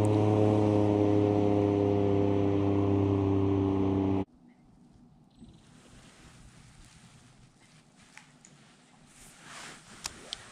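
A boat motor running steadily at a constant pitch, then cutting off abruptly about four seconds in. After it stops, only a few faint ticks remain.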